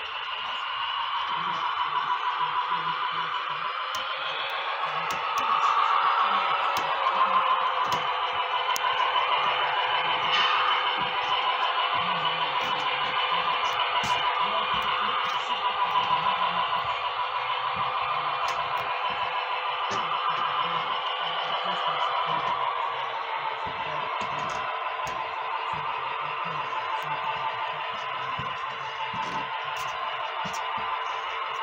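HO-scale Union Pacific diesel model locomotive running on the layout, pulling tank cars: a steady drone of several tones with a few faint clicks.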